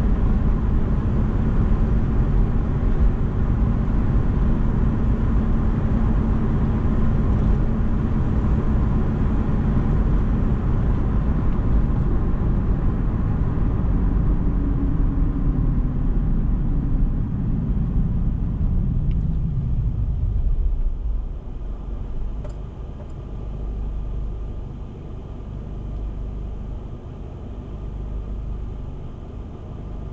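A car driving at road speed, tyre and engine noise heard from inside the cabin, with a hum that falls in pitch as it slows. About twenty seconds in the car comes to a stop and the noise drops to a quieter low idle rumble.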